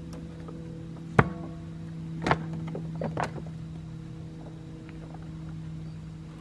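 Split chunks of firewood knocking as they are tossed into a steel fire bowl: a sharp knock about a second in with a brief metallic ring, then a few more around two and three seconds in. Under them runs a steady low engine hum.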